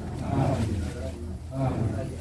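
Indistinct chatter of several people talking at once, over a steady low hum.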